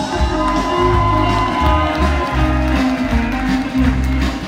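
A live rock band playing: electric guitar, bass guitar and drum kit through the PA, with a steady bass line and held guitar notes.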